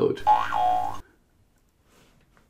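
A cartoon 'boing' sound effect, under a second long, its pitch bending up and then falling, followed by near silence.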